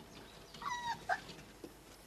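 Cocker spaniel puppy giving two short, high-pitched whines about a second in, the second one briefer.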